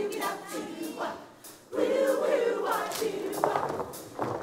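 Show choir singing together, with a brief break about a second and a half in before the voices come back in all at once.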